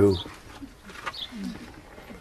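A man's voice ends a word, then pauses. Through the pause there are faint background sounds, including a couple of short high chirps.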